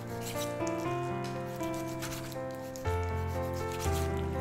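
Chef's knife cutting raw chicken on a wooden cutting board: irregular slicing and scraping strokes against the board, over background music.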